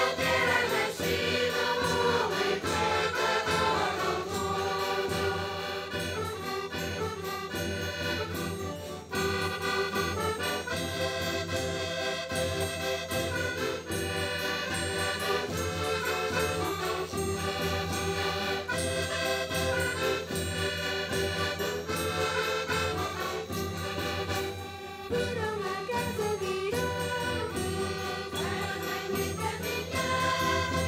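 A folk choir of children and adults singing a traditional Portuguese Kings' Day (Reis) song, accompanied by button accordions and a bass drum. The music runs on steadily, with short dips in loudness about nine seconds in and again near twenty-five seconds.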